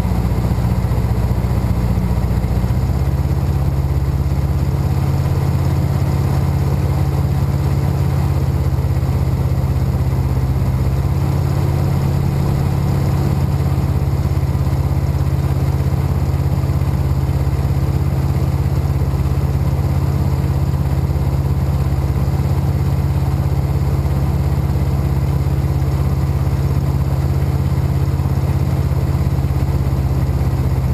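Jodel D195 light aircraft's propeller engine heard from inside the cockpit, a steady low drone on final approach to the runway. The engine note shifts slightly about three seconds in, then holds even.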